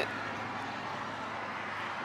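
Rain falling in a steady hiss.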